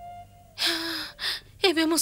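A woman's breathy sigh lasting about half a second, then a shorter second breath, over soft held background music; speech starts near the end.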